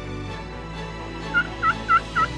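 A turkey yelping: a run of short, evenly spaced yelps, about four a second, starting about two-thirds of the way in over a steady low background.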